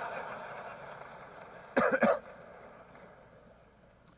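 Large audience laughing, the laughter dying away over a few seconds. A short cough about two seconds in.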